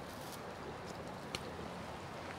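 Quiet outdoor background with one faint, short snap about a second and a half in, as a smooth green ostrich fern stem is broken off by hand.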